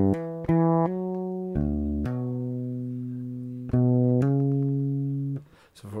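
Electric bass guitar played solo: a phrase of about seven notes, hammered on from the open D string, with the longest note held ringing in the middle.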